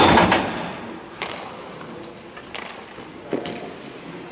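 Broomball play: brooms knocking on the ball, ice and boards, with one loud clattering knock at the start, then three sharp clacks spread through the rest.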